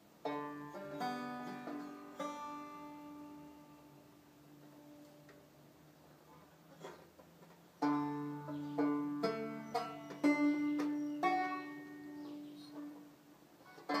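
Banjo picking chord notes: a first run of plucked notes that rings out and fades, a lull of a few seconds, then a second, louder run of picked notes on a D chord from about eight seconds in.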